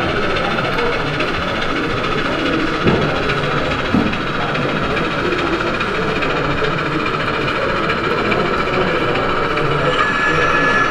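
Model diesel locomotive running slowly on a layout, a steady mechanical running noise with a faint hum, with two short knocks about three and four seconds in.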